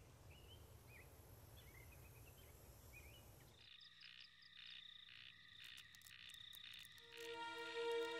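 Faint room hiss with a few faint bird chirps, then, from about three and a half seconds in, a chorus of frogs calling in a steady rhythm of about two calls a second. Soft music with held notes comes in near the end and is the loudest thing.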